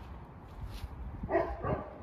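A dog barking twice in quick succession, about a second and a half in.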